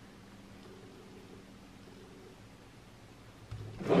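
Quiet room tone with a faint steady hum, and faint rustling of hands twisting a bare wire end onto a battery lead.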